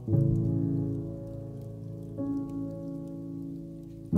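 Slow, soft music: a sustained chord struck at the start and another about two seconds in, each slowly fading. Faint crackles and pops of a wood fire run under it.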